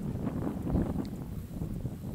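Wind buffeting the microphone: a low rumbling noise that swells and drops in uneven gusts.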